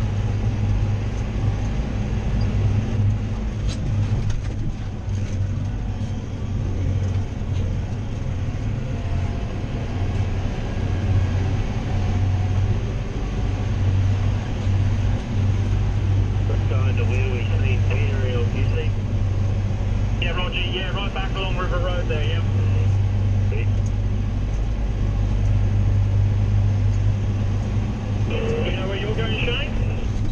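John Deere 7530 tractor's six-cylinder diesel engine running steadily as a constant low drone, heard from inside the cab as the tractor drives along the road.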